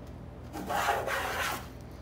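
Wooden moulding plane taking a single stroke along a wooden board, its iron cutting a shaving with a rasping hiss that starts about half a second in and lasts a little over a second.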